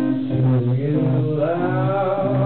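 Live rock band playing, with electric guitar tones ringing; a male voice comes in singing about half a second in.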